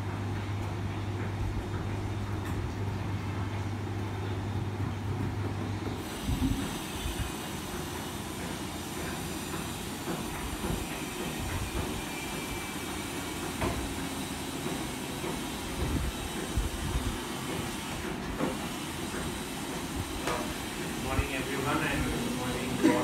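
Room noise: a steady low electrical hum that stops about six seconds in, then a steady hiss with scattered faint knocks and shuffles.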